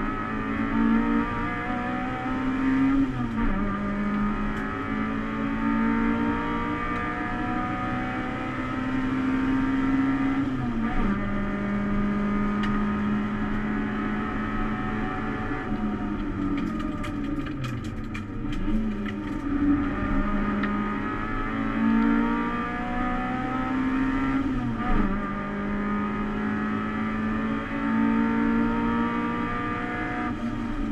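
Cabin sound of a Toyota Starlet EP91 race car's 4E-FE four-cylinder engine under hard acceleration. The pitch climbs and drops sharply at gear changes about 3, 11 and 25 seconds in. In the middle the revs fall away for several seconds, with a few faint clicks, before climbing again.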